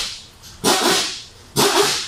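Two short rushes of breath-like noise, about a second apart, close to the microphone.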